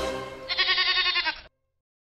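Intro music fading out, then a goat bleating once, a quavering call about a second long that cuts off suddenly.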